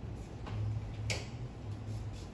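Chalk tapping and scratching on a blackboard as words are written: a scatter of short ticks, one sharper click about halfway through, over a steady low hum.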